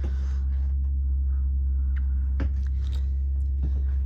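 A steady low hum with a few faint knocks scattered through it.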